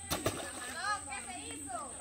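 Faint voices of people talking in the background, with two soft clicks near the start.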